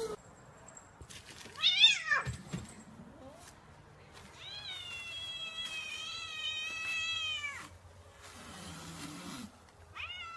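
Domestic cat meowing twice: a short, wavering meow about two seconds in, the loudest sound, then a long, drawn-out meow of about three seconds that drops away at its end.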